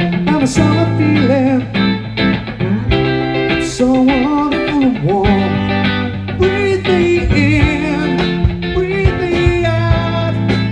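Live band playing, electric guitars to the fore over bass guitar and drums, with a lead line that bends and glides in pitch.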